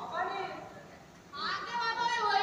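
Speech only: a young actor's high-pitched voice speaking stage dialogue in two short phrases, with a brief pause between.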